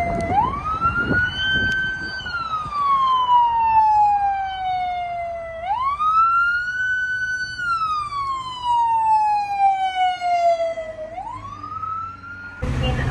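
An emergency vehicle's siren in wail mode. Each cycle rises quickly, holds briefly, then falls slowly, repeating about every five and a half seconds, with three rises in all. Low road noise runs underneath.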